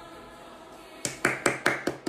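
The last held note of a pop song dies away, then one person claps his hands about five times in quick, even succession.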